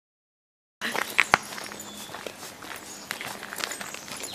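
Footsteps walking on a dirt-and-gravel trail, with a few sharp knocks just after the sound begins, about a second in.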